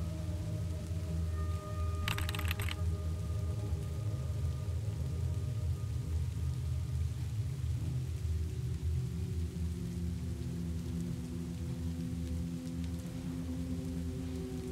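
Dark ambient background music of sustained drone tones, with rain sounds underneath. A brief burst of hiss comes about two seconds in.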